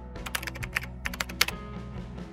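Keyboard-typing sound effect: a quick, irregular run of clicks over a quiet music bed, stopping about a second and a half in.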